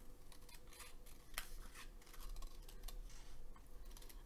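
Scissors snipping through a piece of printed paper: a run of small, faint cuts with one sharper snip about a second and a half in.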